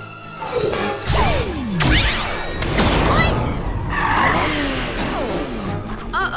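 Cartoon action soundtrack: music layered with whooshing and crashing sound effects, including a long falling swoop between about one and two seconds in.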